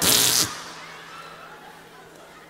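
A short, forceful breathy blowing burst into a handheld microphone, about half a second long, as a comic sound effect. Then quiet room tone.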